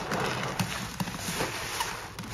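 Gloved hands squeezing a sponge loaded with thick cleaning suds, the foam squelching and crackling with irregular wet clicks and pops.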